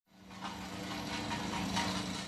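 Steady hum of an engine running, fading in over the first half second.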